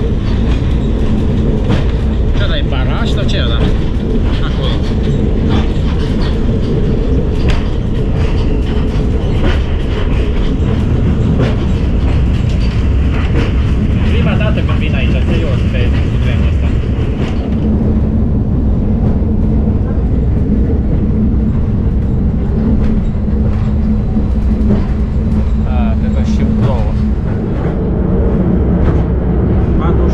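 Cabin noise of a Malaxa diesel railcar running at speed: a loud, steady rumble of engine and wheels with clicks from the rail joints and a steady engine drone beneath. Over the first half, on a steel truss bridge, a harsher higher noise rides on top and stops a little past halfway.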